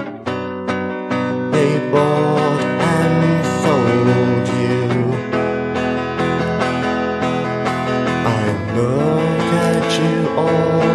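Electric guitar playing an instrumental lead passage, with sliding, bent notes over sustained guitar chords.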